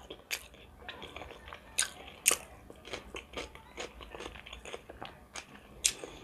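A person chewing food close to the microphone: irregular crunches and wet mouth clicks, the loudest about two seconds in.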